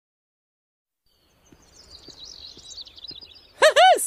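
Silence for over a second, then faint cartoon birdsong twittering. Near the end Mickey Mouse's high cartoon voice starts loudly.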